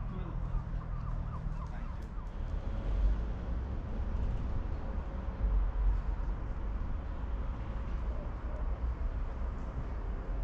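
Wind buffeting an action-camera microphone, a low rumble that gusts louder about three seconds in and again around six seconds, over faint outdoor background noise.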